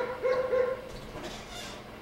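A dog barking three short times in quick succession, all within the first second.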